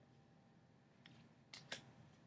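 Near silence, broken by two faint, quick clicks about a second and a half in as tarot cards are handled and swapped.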